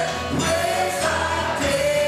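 Live gospel worship music: voices singing together with a band, holding long notes, over percussion hits.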